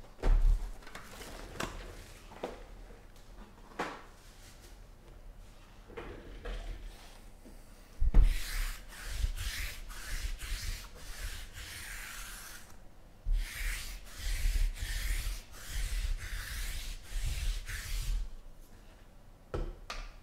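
Sticky lint roller rolled back and forth across a tabletop, its adhesive sheet crackling in repeated strokes over two long passes in the second half. Before that, a few light knocks and taps as foil card packs are handled.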